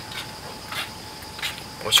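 Crickets chirping: a steady high-pitched trill with a few faint chirps about every three quarters of a second, before a man starts speaking near the end.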